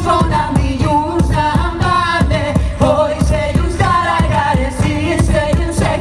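Live folk band playing: a woman sings a gliding melody into the microphone over a steady drum beat and folk instruments.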